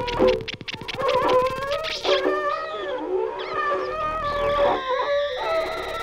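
Free-improvised experimental music for baritone saxophone and Ibanez electric guitar run through effects pedals: several pitched tones bend and slide up and down against each other, with a rapid fluttering pulse in the first second and steadier held tones toward the end.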